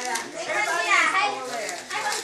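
Children's voices talking.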